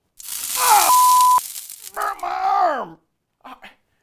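A loud crackling electric-zap hiss as a man yells out, shocked by the appliance he has grabbed. A short steady beep cuts off sharply about a second and a half in, then the man lets out a falling groan.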